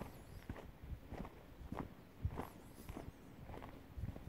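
Footsteps of a person walking at an easy pace on a gravel path, about one step every 0.6 seconds.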